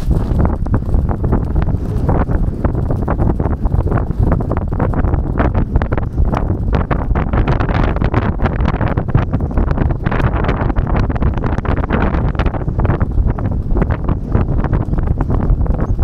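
Racehorses galloping on turf, their hoofbeats heard from the saddle as a dense run of thuds under heavy wind rumble on the microphone.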